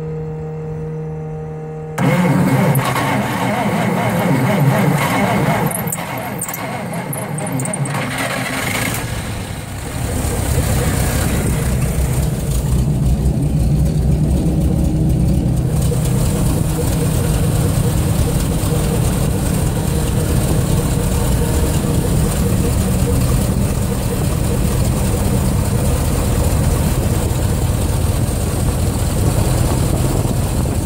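Chrysler 318 industrial V8 of a 1975 White 5542 combine cold-starting at about freezing: a steady hum for the first two seconds, then the engine turns over and catches, uneven for several seconds before settling into a steady run from about ten seconds in.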